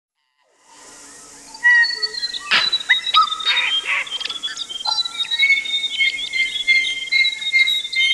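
Birdsong: many birds whistling and chirping over a steady high hiss, fading in from silence and growing busy after a second or so.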